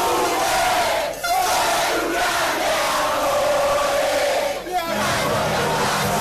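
Large crowd of football fans shouting together in a loud, sustained chant-like roar, breaking off briefly twice.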